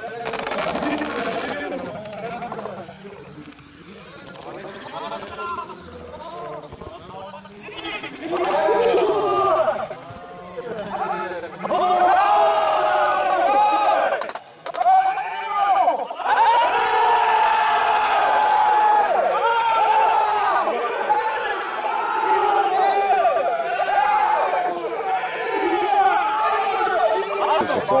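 A group of football supporters chanting and singing together from the sideline, with long drawn-out sung notes. The chant is quieter at first, builds about eight seconds in, and is loud from about twelve seconds on.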